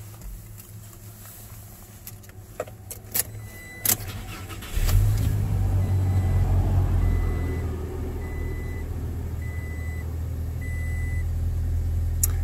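2018 Toyota Tacoma's V6 engine started from cold: a few clicks, then about five seconds in it catches and settles into a steady idle. A short high warning chime beeps repeatedly over the idle, the door-ajar alert.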